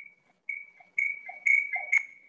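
A high-pitched ping repeating about twice a second, each with a short ringing tail, growing steadily louder.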